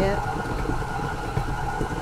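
Electric tilt-head stand mixer running steadily, its motor humming with a thin whine as the beater works a thick, stiff cookie dough.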